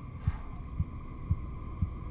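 Low, heartbeat-like thumps about twice a second over a steady hum: a pulsing beat in the film's soundtrack.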